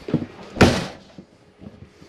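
RV entry door slammed shut once, a single sharp bang about half a second in, followed by a few faint latch and handling clicks.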